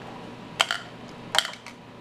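Two short, sharp plastic clicks about a second apart as a small plastic bottle's blue cap is worked by hand.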